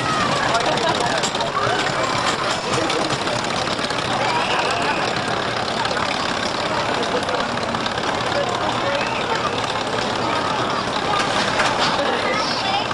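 Jr. Gemini junior steel roller coaster train running along its track, a steady rumbling noise, mixed with the chatter of a crowd and children's voices.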